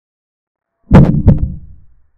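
A digital chess-board move sound effect: two quick low knocks about a third of a second apart, the first the loudest, fading out over about half a second.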